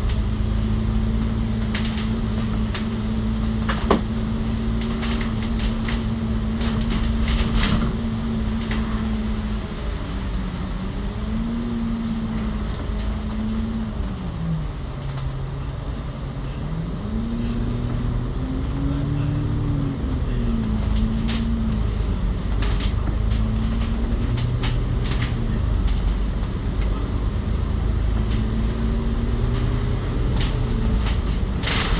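Double-decker bus with a Cummins L9 diesel and ZF Ecolife six-speed automatic, heard from inside the cabin: a steady engine and driveline note that sinks about ten seconds in as the bus slows for a roundabout, then climbs again as it pulls away and settles. Body rattles and knocks run through it, the sharpest one about four seconds in.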